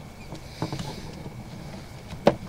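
Sewer inspection camera's push cable being pulled back through the line, with faint scattered clicks and light rattles from the cable and reel. A steady faint high tone runs underneath.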